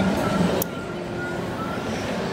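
Steady background noise of a busy indoor hall: a low rumble with faint distant voices, and a brief click a little after half a second.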